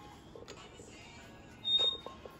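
Cast-iron barbell weight plates: one sharp metal clank near the end, with a short high ring after it.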